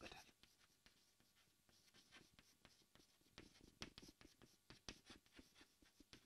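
Faint taps and scratches of chalk writing on a chalkboard, a string of short strokes throughout.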